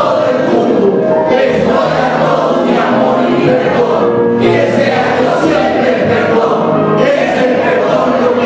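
A man's voice leading a group of voices chanting together in unison, many voices overlapping.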